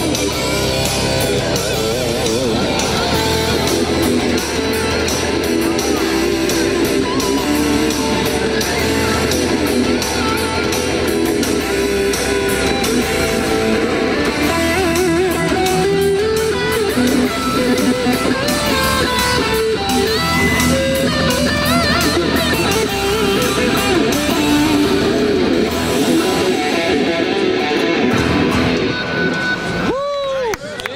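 Two electric guitars playing lead lines together, with bends and vibrato, over a dense accompaniment; the music ends near the close.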